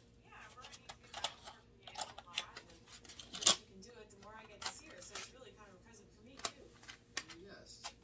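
Prismacolor coloured pencils clicking against one another and their case as they are handled and sorted: sharp, irregular clicks, the loudest about three and a half seconds in. Faint dialogue runs underneath.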